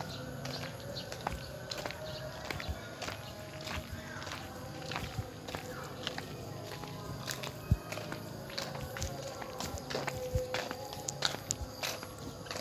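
Footsteps of a person walking, with irregular clicks and scuffs, over a faint steady hum.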